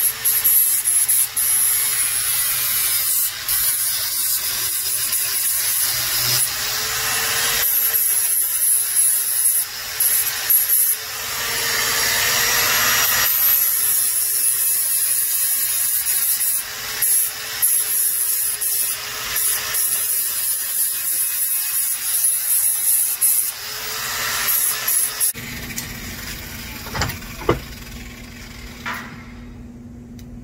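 Electric angle grinder with an abrasive disc grinding down a green cedar branch: a steady high whine over loud grinding noise, the pitch wavering as the disc is pressed into the wood. It shuts off about 25 seconds in, leaving a low steady hum.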